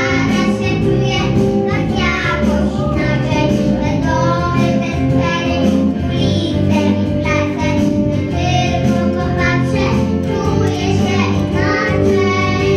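Two six-year-old children, a boy and a girl, singing a song together into a microphone over a steady instrumental accompaniment.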